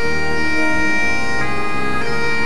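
Background bagpipe music: a steady drone under the chanter melody, which moves to a new note about two-thirds of the way through.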